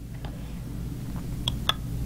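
A few light clicks from handling a plastic accessibility switch and plugging its cable into the switch interface, two sharp ones close together near the end, over a low steady hum.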